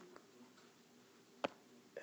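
Near silence: faint room tone, with a single short click about one and a half seconds in.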